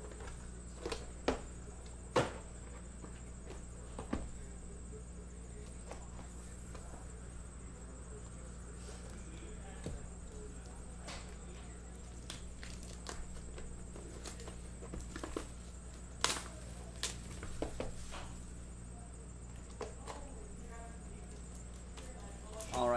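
Plastic shrink wrap being picked at and peeled off a cardboard trading-card hobby box: scattered crinkles and small clicks from the hands and box. A steady low electrical hum runs underneath.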